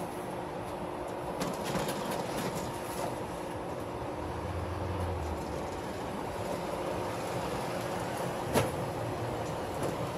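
Steady outdoor traffic and parking-lot noise, with a brief low rumble midway. Over it come light knocks and scrapes of cardboard boxes being shifted into an SUV's cargo area, and one sharp knock near the end.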